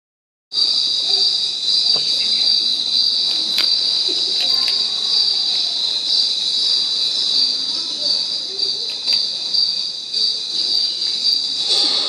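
Steady, high-pitched insect chirring with a few faint clicks.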